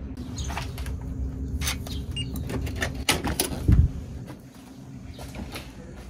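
A door being opened and shut, with scattered clicks and knocks over a steady low hum and one heavy thump a little over halfway through.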